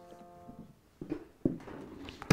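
A piano chord (F major, chord IV in C) played on a keyboard, ringing out and fading away within the first second. It is followed by a brief dead gap and then a few faint small noises and a click.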